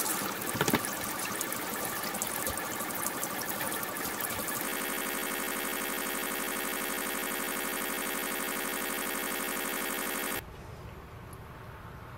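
Tap water running from a kitchen faucet into a sink and splashing over a wet tie-dyed shirt, with fabric being handled at first. About four and a half seconds in it settles into a steady stream with a humming tone, which drops away shortly before the end.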